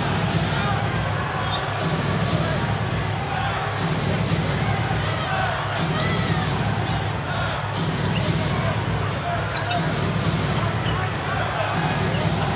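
A basketball being dribbled on a hardwood court over steady arena crowd noise, the crowd's low rumble swelling and easing about every two seconds.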